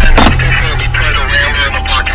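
A steady low rumble runs under indistinct voices, with a sharp click shortly after the start.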